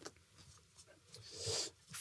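Quiet room tone, then one soft breath, an inhale of about half a second, on a lapel microphone shortly before the end.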